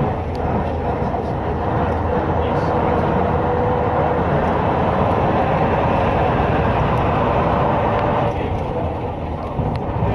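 Leyland Titan PD2 double-decker's diesel engine running under way, heard on board, with a steady rumble and road noise. The engine note eases off a little after about eight seconds.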